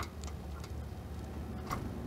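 A few sharp ticks and taps of a black-capped chickadee working at a metal wire-cage feeder, four in the space of two seconds, over a low steady hum.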